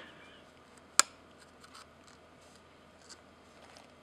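Quiet handling of a sensor-cleaning swab being worked inside a DSLR's open lens mount: one sharp click about a second in, then a few faint ticks.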